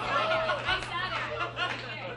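Indistinct chatter: several voices talking over one another, with a steady low hum underneath.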